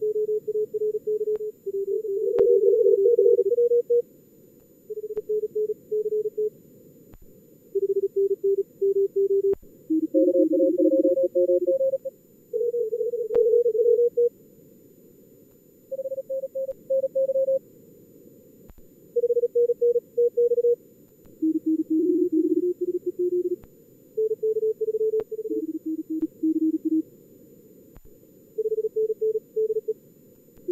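Simulated contest Morse code (CW) from a logging program's practice mode: fast keyed tones at several different pitches between about 300 and 550 Hz, with signals sometimes overlapping, over a steady band of filtered receiver hiss.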